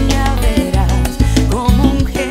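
Salsa band music playing, with a steady low bass line and a melody line that wavers in pitch.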